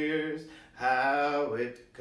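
A man's voice singing, with two steady held notes.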